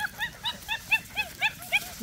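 A puppy yipping in a quick, even run of short, high-pitched calls, about four a second.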